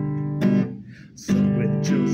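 Acoustic guitar being strummed, its chords ringing between strokes, with a short drop in level just before halfway.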